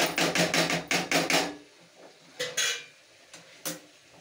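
Rapid series of sharp knocks, about six a second, from kitchen utensils being struck, stopping after about a second and a half. A short scraping sound follows, then a single click near the end.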